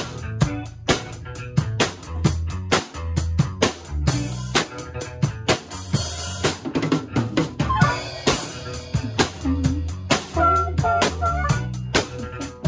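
A band playing live in a rehearsal room: a drum kit keeping a steady beat over bass guitar and electric guitar, with harmonica phrases coming in near the end.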